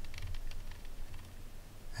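Faint, irregular clicking of the rotary encoder knob on a ZK-4KX buck-boost power supply module as it is turned to lower the current-limit setting, over a low steady hum.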